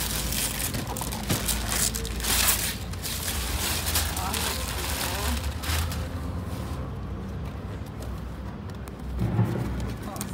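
Gift wrapping paper rustling and tearing in repeated short rasps as a wrapped box is opened, over a low wind rumble on the microphone and soft voices. The rustling stops about six seconds in, and a short voiced sound comes near the end.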